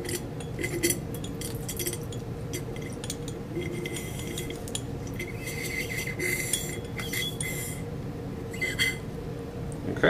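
Glass clinking on a glass Erlenmeyer flask: a long thin glass tube knocks lightly and repeatedly against the flask, in small clusters of taps that are busiest about six to seven seconds in. A steady low hum runs underneath.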